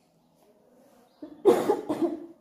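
A woman coughing twice into the crook of her elbow, the coughs coming a little over a second in and close together.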